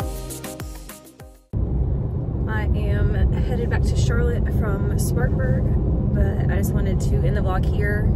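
Music fades out, then after a sudden cut comes the steady low rumble of a car on the road, heard from inside the cabin, with voices talking over it.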